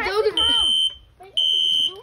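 Fire alarm beeping: a high, steady, piezo-style beep about half a second long, sounding twice about a second apart.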